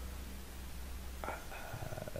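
A low steady hum and faint hiss, with the hum dropping away about a second in, then a quiet hesitant spoken "uh" near the end.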